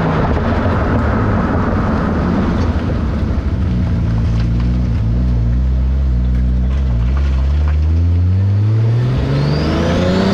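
Toyota Supra MkIV's turbocharged 2JZ-GTE straight-six under way, heard from beneath the car right beside the exhaust pipe, with road and tyre noise. The engine note holds low and steady, then rises over the last couple of seconds as the car accelerates.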